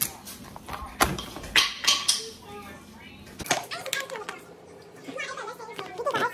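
Objects handled on a tabletop: a few sharp knocks and clicks, with plastic rustling as a clear plastic pack of combs is picked up. A faint voice speaks in the second half.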